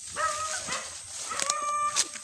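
High-pitched animal calls, twice: a short one near the start and a longer, held one in the second half.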